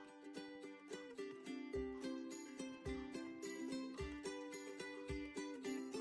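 Quiet background music: a light melody of plucked-string notes over a soft beat roughly once a second.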